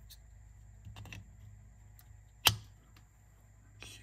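Small parts of a cassette deck's tape transport being handled and fitted by hand: faint rustling and a couple of light clicks about a second in, then one sharp click about two and a half seconds in.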